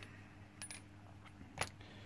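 Two brief light clicks about a second apart over a faint low steady hum.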